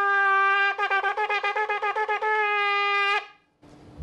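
A polished Sephardic ram's-horn shofar being blown loudly. It gives a held note, then a fast run of short staccato blasts, then a held note again, which stops sharply about three seconds in.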